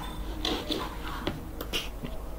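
A few faint, sharp clicks spread over the two seconds, from a computer mouse as the recorder's toolbar is dragged across the screen. A low steady hum sits under them.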